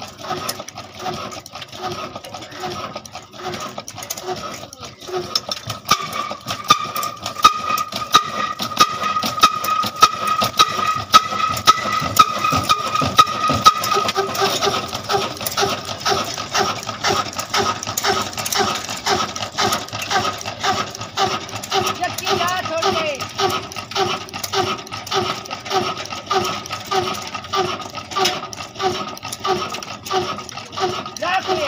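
Large-flywheel stationary diesel engine running slowly, with a regular beat about one and a half times a second under rapid mechanical clicking. A steady high whine sounds for several seconds in the middle.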